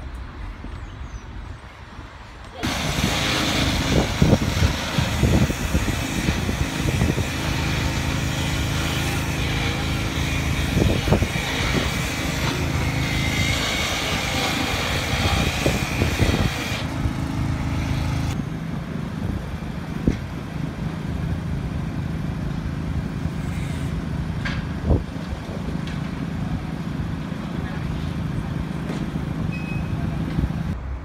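Outdoor street noise with vehicle engines running: a steady low engine hum under general outdoor noise, with a few sharp knocks. The sound jumps up suddenly about two and a half seconds in and changes abruptly again past the middle.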